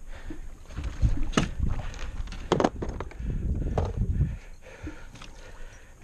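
Irregular knocks and water sloshing against an aluminum boat's side as a large fish is held in a landing net at the gunwale, with a few sharper clicks.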